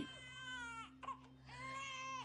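A newborn baby crying faintly in a TV drama's soundtrack: two high-pitched wails, the second starting about a second and a half in.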